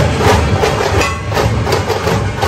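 A percussion band drumming a loud, fast, even beat of about four to five strokes a second.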